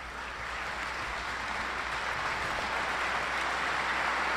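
Audience applauding, swelling over the first second, then holding steady.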